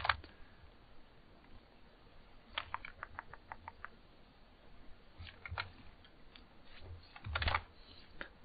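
Computer keyboard and mouse clicks, faint: a quick run of about eight even clicks around three seconds in, a few more a little after five seconds, and a louder cluster near the end.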